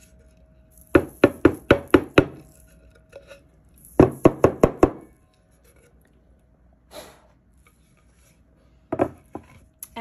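A wooden craft board being knocked sharply to shake off loose glitter. A quick run of about six knocks comes about a second in and five more about four seconds in, with a few softer knocks near the end.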